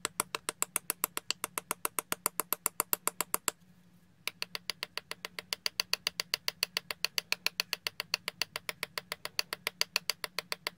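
Rapid, even tapping, about six light clicks a second, as a flat tool knocks against a small plastic powder pot to shake pigment powder out onto paper. The tapping stops briefly a little after three seconds in, then resumes.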